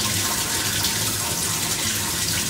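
Water running steadily through a Levolor pool autofill valve, held open by the controller's timed delay even though the level sensor is back in the water.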